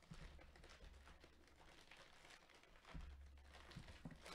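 Faint crinkling and rustling of plastic wrapping being handled and pulled open by hand.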